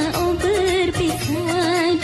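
A song: a solo voice sings a wavering, ornamented melody over a full band accompaniment.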